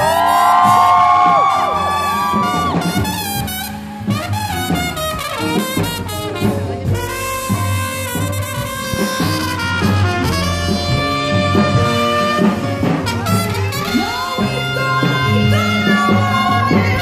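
Live jazz band playing an instrumental break, led by a trumpet playing loud high notes that bend downward in the first couple of seconds, over the band's bass and rhythm section.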